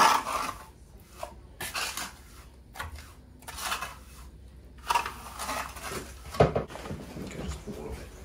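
A steel trowel scraping and swishing through wet self-levelling floor compound in repeated strokes, each lasting about half a second to a second. A sharp knock, the loudest sound, comes a little past the middle.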